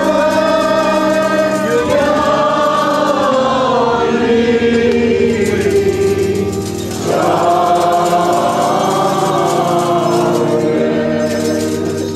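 A group of voices singing an Armenian Church liturgical hymn in long, held notes, with a short break about seven seconds in before the next phrase.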